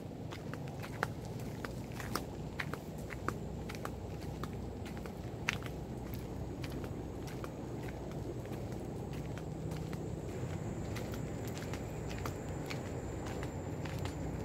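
Footsteps walking along a dirt trail, with scattered sharp crackles and clicks over a steady low rumble. A faint steady high-pitched whine comes in about halfway through.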